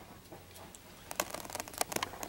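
Faint handling noise: a scatter of small clicks and ticks in the second half as a bow's timing cable is pulled through the riser by hand.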